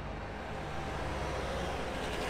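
Steady background noise of city street traffic, an even rush with a low hum underneath.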